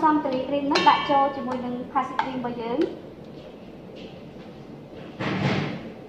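A short scraping noise of about half a second near the end, as whipped cream is scraped out of a stainless steel mixing bowl into a bowl of pastry cream.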